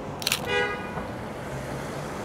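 A short car horn toot about half a second in, just after a brief sharp rattle, over steady city street traffic.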